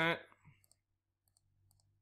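Faint computer mouse clicks, about five short ones spread out, as digits are clicked into an on-screen calculator.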